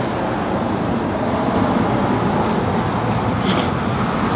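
Road traffic noise: a steady rush of passing vehicles that swells slightly toward the middle.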